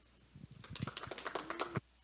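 A quick, dense run of clicks and taps that starts about a third of a second in and cuts off suddenly just before the end.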